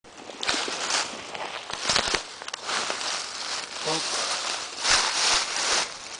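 Footsteps crunching and shuffling through dry fallen leaves, in several uneven bursts with a few sharp snaps.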